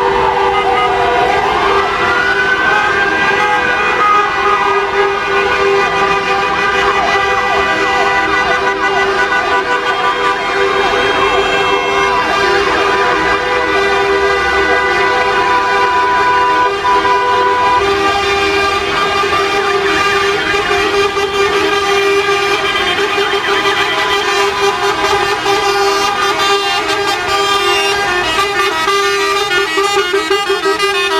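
Many vehicle horns from a slow convoy of trucks, buses and cars, held on together as a continuous chorus of steady horn notes, with a siren wailing down and back up in the first few seconds.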